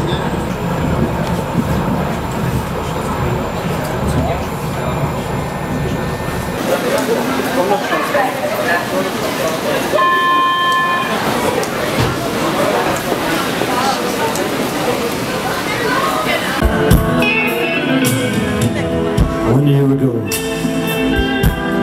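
Vienna U-Bahn train running with a low rumble, then voices at the station and a steady electronic signal tone about a second long midway through. Live band music starts near the end.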